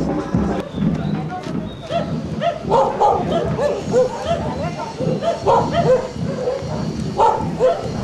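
A small dog barking again and again in quick, high yaps, starting about two seconds in and going on to near the end.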